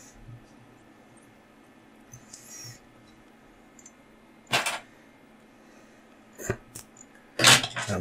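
Small handling sounds at a fly-tying vise: a few short clicks and rustles from the tools and thread, the loudest a brief sharp burst near the end as the yellow tying thread is snipped off with scissors.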